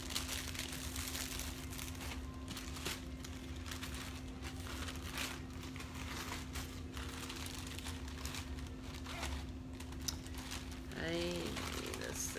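Bags of jewelry being handled, rustling and crinkling in soft, irregular crackles, over a steady low hum.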